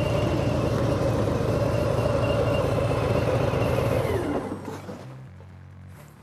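Harley-Davidson motorcycle's V-twin engine running under way with a deep, rapid firing pulse. About two-thirds of the way in its pitch falls and the sound fades away.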